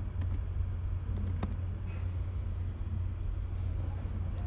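A few scattered keystrokes on a computer keyboard as code is typed, over a steady low hum.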